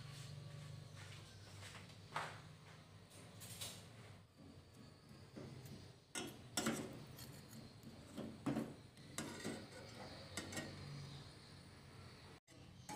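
Metal ladle clinking and scraping against a stainless-steel saucepan while stirring a block of palm sugar with ginger in water, with several sharper knocks in the second half. A low steady hum runs underneath.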